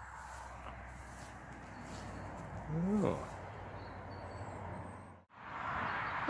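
A man's drawn-out "ooh", rising then falling in pitch, about halfway through, over a steady low rumble and hiss of outdoor background noise on a handheld phone microphone. The background cuts out for a moment near the end.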